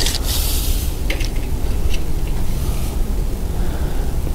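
Uneven low rumble of wind on the microphone, with light rubbing and scraping as a tape measure is stretched along the rough, deeply furrowed bark of a black walnut log.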